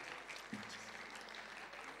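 Faint audience applause in a concert hall, with a low hum coming in about half a second in.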